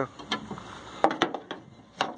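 Handling noise: a few sharp clicks and knocks, the loudest just after a second in, as the camera is moved about inside a vehicle's engine bay.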